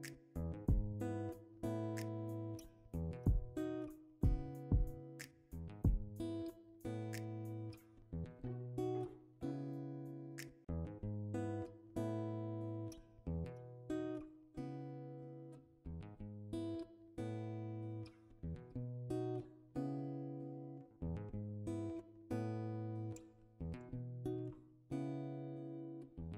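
Background music: a guitar playing plucked notes and strummed chords, each note ringing out and fading.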